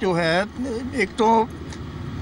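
A man speaking in short phrases, with only a faint steady background hum beneath.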